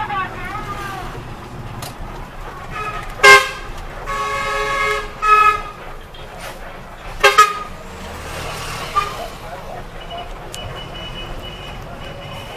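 A bus horn honking from inside the bus: a loud short toot, a blast held for about a second, then two more short toots, over the low drone of the moving bus.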